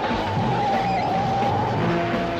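A runaway box truck's tyres squeal in one long, slightly wavering squeal as it takes a curve, over dramatic background music.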